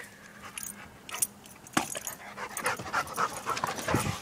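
A dog panting close by, with a light jingle of its collar tags and a few small knocks; the panting and jingling get busier in the second half, and a sharper knock comes right at the end.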